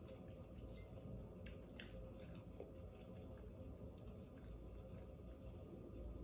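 Faint chewing of a mouthful of buckwheat pancake, with a few soft clicks, over a low steady hum.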